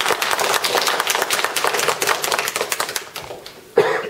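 Audience applauding: many hands clapping, thinning out toward the end. A short loud burst comes just before the end.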